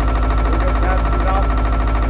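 Engine of the pipe-bursting equipment running steadily, with a fast, even low pulse and a faint steady whine above it.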